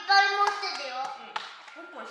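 A child's high-pitched voice talking, fading away over the couple of seconds, with two sharp taps, one about half a second in and one near a second and a half.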